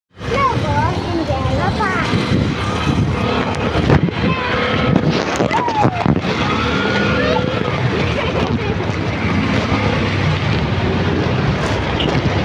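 A small motorcycle engine, as on a Philippine tricycle, runs steadily with a low rumble. People talk over it, and there are a few knocks.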